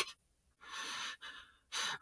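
A person's breath drawn in between spoken sentences: one soft, airy inhalation about half a second in, then a shorter one just before speech resumes.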